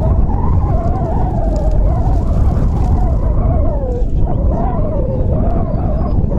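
Wind buffeting an outdoor microphone, a heavy low rumble, with a steady tone that wavers slowly up and down in pitch throughout.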